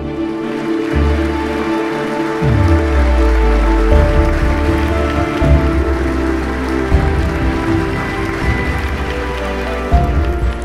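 Audience applauding steadily over background music.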